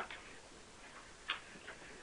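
A quiet pause on the audio line, with two faint short clicks: the first about a second and a quarter in, the second weaker, just after.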